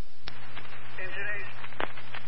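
Fire department radio channel heard through a scanner feed: hiss, then a sharp click about a quarter second in as a transmission keys up. A steady low hum follows, with a few more sharp clicks and a faint, unclear voice in the background.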